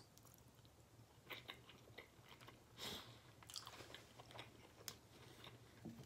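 Faint chewing of a mouthful of baked penne pasta in tomato sauce, with a few soft, scattered mouth clicks, the most noticeable about three seconds in.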